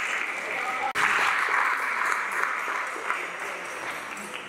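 Audience applauding in a hall, dying away near the end, with a momentary break in the sound about a second in.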